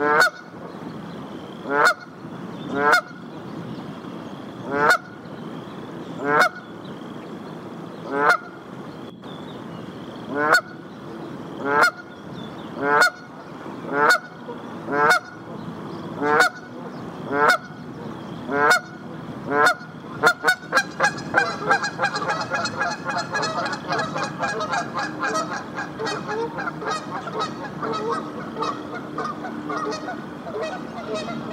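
Canada goose honking, one call about every second, then breaking into rapid, continuous honking about two-thirds of the way through.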